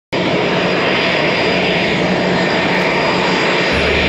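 Turbofan engines of a twin-engine business jet running as it taxis: a steady rushing noise with a thin high whine over it. Near the end it stops and gives way to a low hum.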